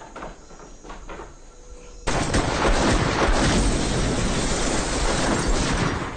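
A long burst of rapid, continuous gunfire, starting suddenly about two seconds in and lasting about four seconds.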